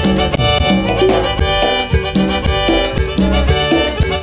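Live dance-band music with a steady beat and a repeating bass line.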